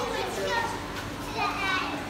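Children's voices: high-pitched chatter and calls from a crowd of kids, with a steady low hum underneath.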